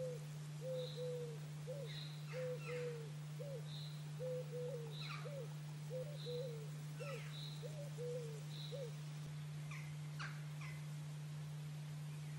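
Several birds calling together: a low hooting call repeated in quick runs until about nine seconds in, a thin high note repeated about once a second, and a few short downward-sliding calls. A steady low hum lies under it all.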